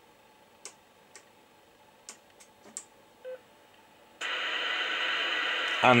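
A few faint clicks, then about four seconds in a CB radio's speaker suddenly starts giving steady static hiss as its squelch opens. The Team SR316D selcall unit has received its code and woken the Team TRX404 radio from standby.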